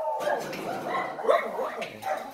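Dogs barking and whining quietly, with a low murmur of a voice underneath.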